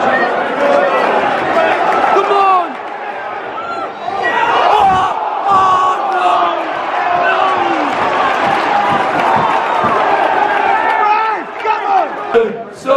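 Large football stadium crowd shouting, many voices at once; it eases about three seconds in and swells again a second later.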